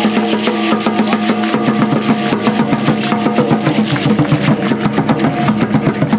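Aztec dance drumming: fast, steady beating on large upright drums over a continuous low tone.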